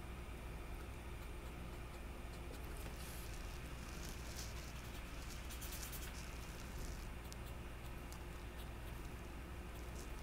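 Faint, intermittent scratching and rubbing of a solvent blender marker's tip being worked over watercolour paper to blend shading, over a steady low background hum.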